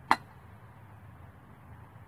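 A single sharp clink from a glass mason jar and its lid as the jar is opened, just after the start, followed by a low background hiss.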